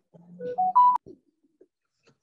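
Short electronic chime of three notes stepping upward, the last the loudest, cut off with a click.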